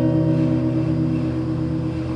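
Acoustic guitar chord left ringing after a strum, its notes held and slowly fading.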